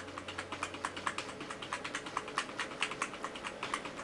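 Computer keyboard's F8 key tapped repeatedly and rapidly in evenly spaced clicks while the PC boots, to call up the Windows 7 Advanced Boot Options menu.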